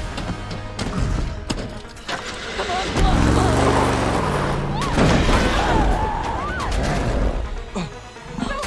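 A film soundtrack: score music mixed with a pickup truck's engine revving up and down about three seconds in, with several sharp impacts early on.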